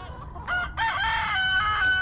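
Rooster crowing: a few short rising notes, then one long held note near the end.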